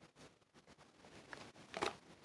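Mostly quiet, with faint rustles and a few light taps, louder near the end, as small cardboard boxes are picked up by hand.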